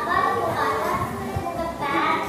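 A girl speaking into a handheld microphone in a large hall, with other children's voices and music underneath.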